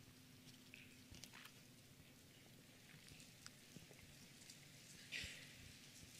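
Near silence: faint scattered clicks and crinkles of small plastic communion cups as people drink, with a brief breathy hiss about five seconds in.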